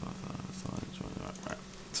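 Irregular computer mouse clicks and key taps over a steady low hum, with a quiet low murmur of voice.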